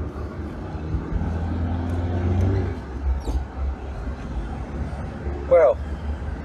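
Car interior noise while driving: a steady low engine and tyre rumble, with the engine note rising for a couple of seconds as the car accelerates, then dropping back.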